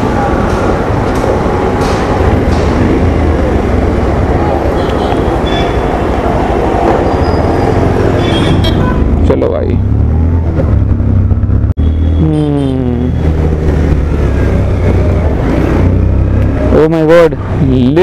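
Motorcycle engine running under way in city traffic, mixed with wind noise on the helmet-side microphone; the engine's pitch rises briefly about twelve seconds in as it revs up.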